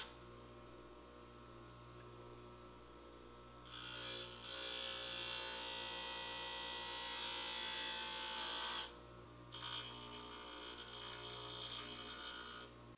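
Bench grinder running with a steady motor hum; about four seconds in, a steel bench chisel is pressed to the grinding wheel and a hissing grind joins the hum for about five seconds, breaks off briefly, then resumes until the end. The grinding takes away the chisel's beveled side to shape a fishtail tip.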